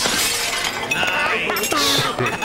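A crash of breaking crockery at the start, with the scatter of pieces trailing off. In the second half come high, sliding, warbling cartoon-style voice sounds.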